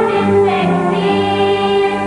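A group of girls singing a Kuwaiti children's folk chant together, in held notes that change pitch about every half second.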